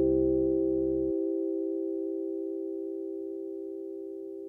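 The song's final held electronic keyboard chord fading out. Its lowest notes stop abruptly about a second in, and the higher tones keep dying away slowly.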